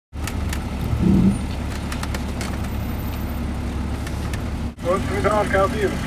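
Vehicle engine idling steadily, heard from inside the cab as a low rumble. It breaks off briefly near the end, and a voice follows.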